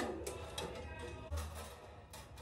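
Faint handling noise: small clicks and rustles as objects from a small metal box are picked through, with a soft thump about a second and a half in.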